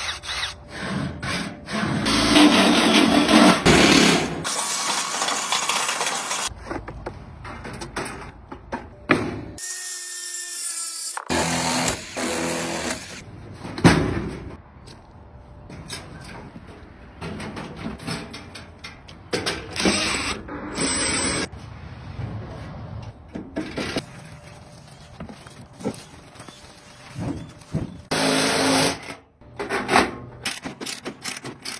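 A cordless drill running in short bursts, boring into the sheet-steel body of a filing cabinet, with knocks and scrapes of metal in between; the pieces are cut one after another.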